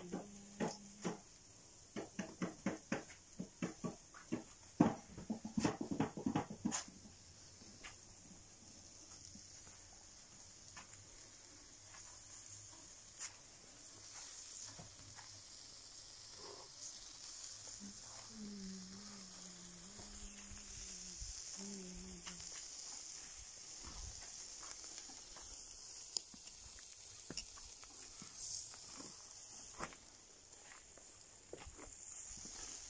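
Meat grilling over an open wood fire: a quick run of sharp crackles and clicks for the first several seconds, then a steady, quiet sizzle. A low drawn-out call sounds for a few seconds in the middle.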